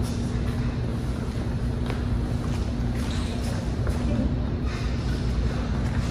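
Steady low rumble of room noise with a constant low hum and a few faint clicks.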